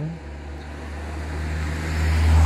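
A car approaching along a road, its engine and tyre noise a low rumble that grows steadily louder.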